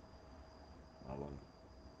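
A pause in speech filled by a faint, steady high-pitched whine, with one short spoken word about a second in.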